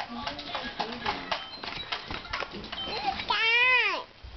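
Nylon umbrella canopy rustling and ticking as it is handled up close, then near the end a long high-pitched voice sound from a young child that rises and falls.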